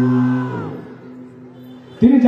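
A man's voice over a public-address system holding one long sung note, which fades out about half a second in; a faint steady tone lingers afterwards.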